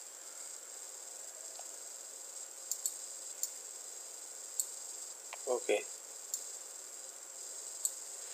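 Computer mouse clicks, a few short soft clicks spread through the middle and end, over a steady high-pitched background whine. A brief murmured voice sound comes about five and a half seconds in.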